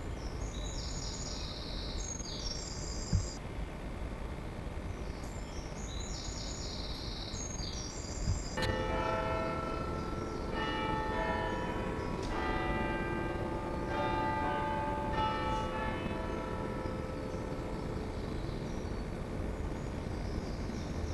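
Bells ringing: a series of struck peals with long ringing overtones begins about eight seconds in and carries on to the end. Before that, high short chirps are heard twice, over a steady low background noise.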